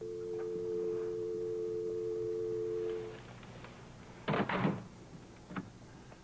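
Telephone dial tone, a steady two-note hum, sounding for about three seconds and then stopping, as heard once the line has gone dead. About a second later comes a loud double thump, then a lighter knock.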